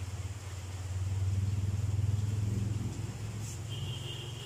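A low engine-like rumble that swells about a second in and eases off toward the end.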